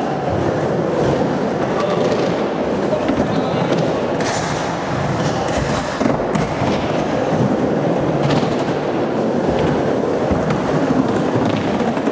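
Skateboard wheels rolling and carving on a concrete bowl, a steady rumble echoing around an indoor hall, with a few light clicks from the board.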